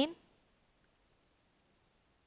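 A woman's voice finishing a phrase right at the start, then near silence broken by two very faint computer mouse clicks.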